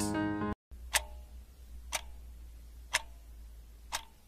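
Background music cuts off half a second in, followed by a clock-tick sound effect: four sharp ticks, one each second, over a faint low hum, counting down the seconds of an on-screen timer.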